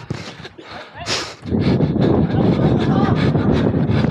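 Wind buffeting the microphone of a body-worn camera as the wearer runs. It comes in as a loud, fluttering rumble about a second and a half in.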